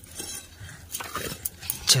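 Soil and brick rubble scooped by hand into a large metal pan (parat): grit scraping and stones clinking against the metal in a few short, irregular knocks.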